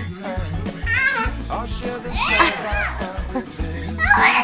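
Young children's high-pitched squeals and vocalising during play, over a song with a pulsing bass beat, the loudest squeal a little past two seconds in.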